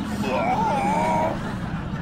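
A wordless vocal sound with gliding pitch, over a low steady hum.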